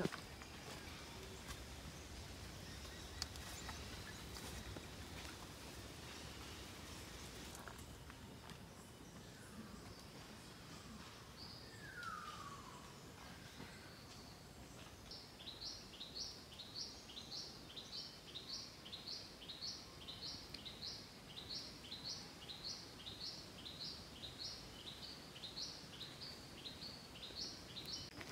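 Quiet rainforest ambience. A little before halfway a single falling whistle sounds, then a bird starts a long run of short, high notes repeated about twice a second, kept up to the end.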